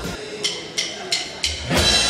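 A drummer's count-in: four sharp, evenly spaced stick clicks, about three a second. The rock band comes in with drums, guitars and bass near the end.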